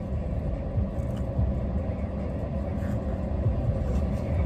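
A car's engine idling, a steady low rumble heard inside the cabin.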